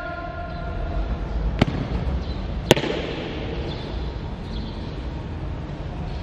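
The echo of a shout dies away in a large hall, then boots strike a hard tiled floor as a marcher walks off: two sharp heel strikes about a second apart, over a steady low rumble.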